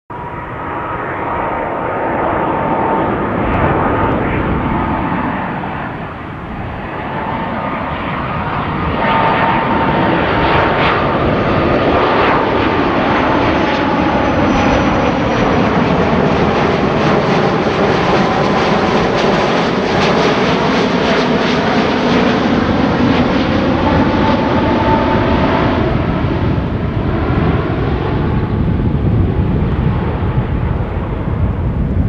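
Airbus A330-200 twin-engine jet airliner on landing approach, its turbofan engines running with a steady roar and a faint whining tone. The sound grows louder about a third of the way in and stays loud as the plane passes overhead and moves away.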